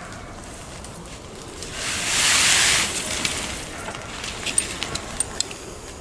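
Tarp fabric rustling in one loud swish, about two seconds in, as it is lifted on its pole, followed by a few faint ticks and crackles.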